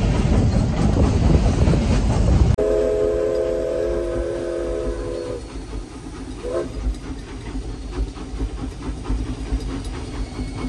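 Steam locomotive running with a loud rumble heard from the tender. After a cut, the locomotive's steam whistle blows one long blast of about three seconds, several notes sounding together, followed by the quieter running of the engine heard from inside the cab.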